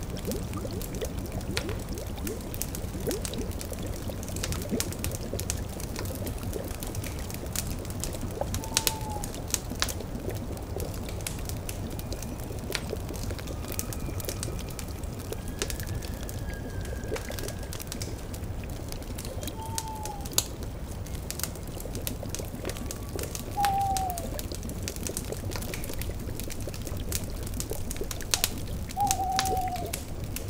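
Steady bubbling of a cauldron over a crackling fire, with scattered sharp crackles throughout. An owl gives four short falling hoots, at about 9, 20, 24 and 29 seconds in.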